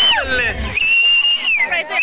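Loud finger whistling from a guest in a crowd: one long steady high whistle breaks off and drops just after the start, a second long whistle follows about a second in and falls away, then a few short chirping whistles. Excited voices are heard between them.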